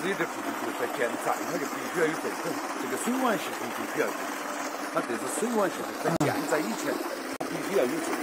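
Water gushing out of a stone outlet and splashing into a narrow stone channel, a steady rushing splash. The outlet is fed by the village's underground water channels. Faint voices are heard under it.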